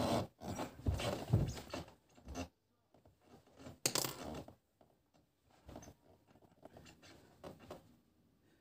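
Push-ups on a wooden floor: rubbing and rustling with the body's movement, in a quick run during the first couple of seconds, then a louder burst about four seconds in, then only faint scattered sounds.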